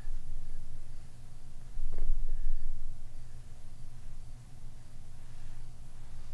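Low, steady rumbling room tone with no speech, broken by one light tap about two seconds in.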